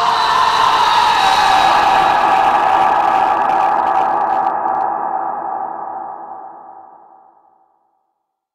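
A sustained electronic drone from the film's soundtrack: a cluster of steady held tones that slowly fades away, dying out shortly before the end.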